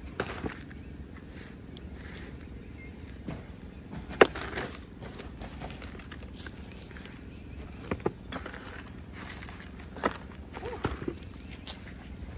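Potting soil being scooped by hand from one plastic pot and filled into a plastic nursery pot around a tomato plant: soil rustling and crumbling, with a few sharp knocks, the loudest about four seconds in.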